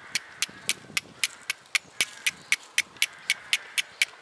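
Steel striker struck down a flint in quick, even strokes, making sharp metallic clicks about four times a second, about fifteen in all, to throw sparks for a flint-and-steel fire.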